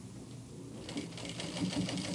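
Heavy industrial straight-stitch sewing machine running slowly, stitching through a double-folded denim jeans hem. A low motor hum at first, then rapid needle ticking that picks up from about a second in.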